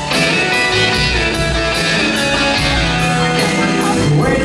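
Live band playing an instrumental passage of a slow soul ballad: electric guitar to the fore over bass, keyboard and drums, with a steady cymbal beat of about two strikes a second.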